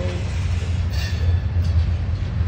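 Railcars of a freight train (tank cars and covered hoppers) rolling past at close range: a steady low rumble of steel wheels on the rails.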